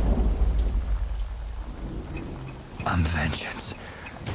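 Deep, steady low rumble under a faint hiss from a film action scene's sound mix, strongest at first and easing off, with a short sharper burst about three seconds in.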